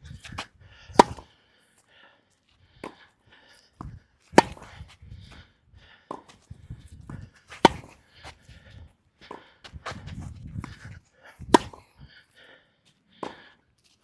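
Tennis rally on a clay court. Four loud, sharp racket-on-ball strikes come from the near racket, strung with new Kirschbaum Flash 1.25 polyester string, about every three to four seconds. Between them are fainter hits and bounces from the far end of the court.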